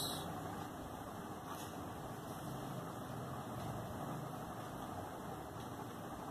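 Quiet, steady room hum, with faint scratching from a ballpoint pen writing on paper.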